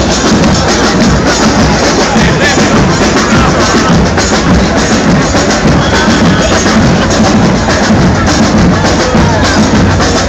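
Loud, steady percussion-led music with drums beating, played for a street fire-spinning show, over a crowd's chatter.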